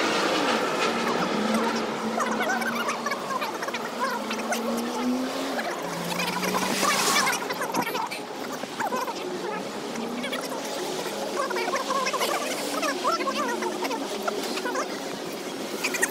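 City street sounds played back sped up: passers-by's voices turned into quick, high-pitched chatter over street noise.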